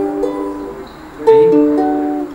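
Ukulele demonstrating chords: a G chord rings and fades, then a D chord is strummed about a second in and rings on.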